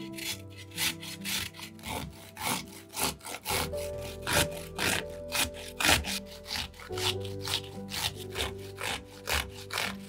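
Pickled gherkin rasped back and forth on a flat stainless-steel hand grater resting on a wooden board, with rhythmic scraping strokes about two a second.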